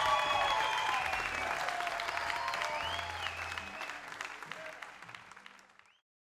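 Audience applauding, fading out over the last two seconds or so.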